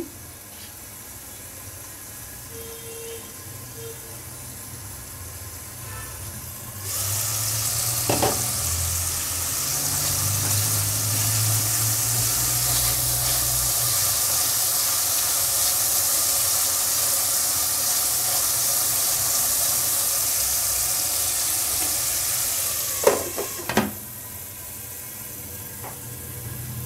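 Potatoes frying in oil in a kadai on a gas stove. The sizzle is faint under the lid, then turns loud and even when the lid comes off about a quarter of the way in, with the spatula stirring. A clank of the lid going back on, a few seconds before the end, muffles it again.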